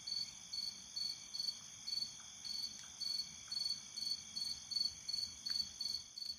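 Crickets chirping in an even rhythm of about two chirps a second, over a steady high insect trill.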